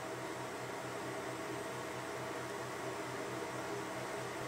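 Steady background hiss with a low pulsing hum: the room's noise floor, with no distinct sound event.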